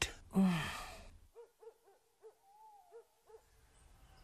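A brief breathy sigh, then faint owl hooting: a run of short low hoots with one longer wavering hoot in the middle.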